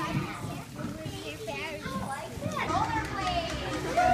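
Young children chattering and calling out, their high voices rising and falling, louder in the second half.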